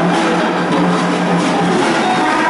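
A live band with drum kit and congas playing a dense, noisy passage over a low held note that stops shortly before the end.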